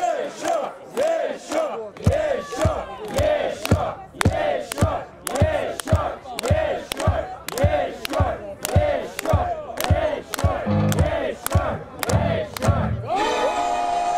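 Many male voices chant a rhythmic battle cry in unison, about three shouts every two seconds. A steady beat of sharp hits joins about two seconds in. Near the end a held musical chord comes in.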